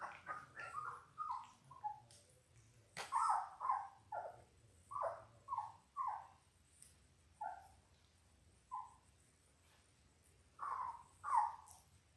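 17-day-old Labrador retriever puppies whimpering: a string of short, high cries, each falling in pitch, coming in clusters with pauses between them. The two loudest cries come near the end.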